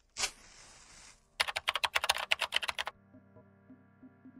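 Title-card sound effects: a short burst and hiss, then a quick run of about a dozen sharp typing-like clicks lasting about a second and a half, then a quieter low steady drone with faint blips.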